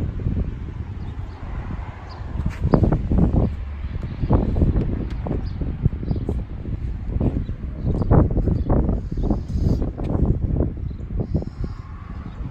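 Wind buffeting a handheld phone's microphone, with irregular low rumbling and thumps of handling noise as the phone is moved along the car.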